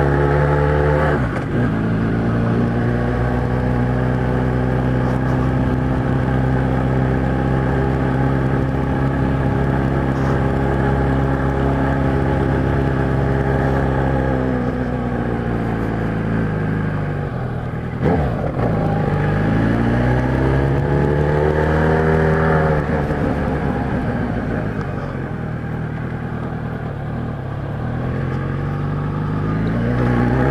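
Kawasaki Z1000's inline-four engine through an aftermarket 4-into-1 exhaust, riding: it holds a steady pace for the first half, revs drop as it slows, then it pulls away with rising revs, drops again and picks up once more near the end. A sharp knock comes just as it pulls away.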